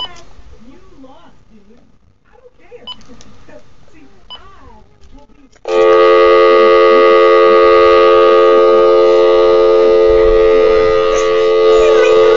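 A loud, steady electronic telephone tone with many pitches at once, starting abruptly about six seconds in and holding without change. A toddler whimpers softly before it and begins to cry over it near the end.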